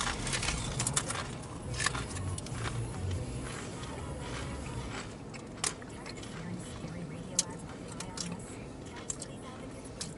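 Wavy potato chips being chewed: scattered, irregular crisp crunches at a low level, with a low hum underneath during the first few seconds.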